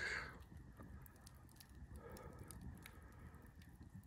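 Faint crackling of a wood campfire, with scattered small ticks and pops over a quiet background.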